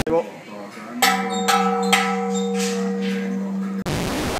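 Large hanging temple bell struck once about a second in, ringing on with a steady low hum and higher overtones that slowly fade. Near the end the ringing is cut off by a short burst of TV-static hiss.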